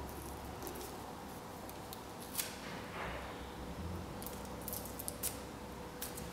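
Scissors snipping heat-resistant tape, a few short sharp clicks with light handling of the tape and paper, the loudest snip about two and a half seconds in.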